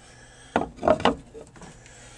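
A short cluster of scraping and knocking handling sounds as hands work a reptile enclosure's lid and frame, bunched between about half a second and a second in.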